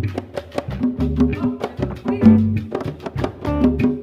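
Live Cuban band playing an instrumental passage: hand-played congas over a repeating bass line and guitar, in a steady Latin rhythm with sharp, wood-block-like strokes.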